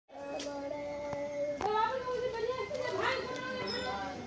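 Young children's voices: one long held call, then excited high-pitched chatter. A few sharp clicks come in the first two seconds.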